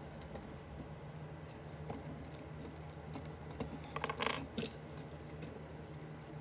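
Small plastic clicks and clatter of Lego vehicles being handled and set down on a hard countertop, with a cluster of louder clicks about four seconds in.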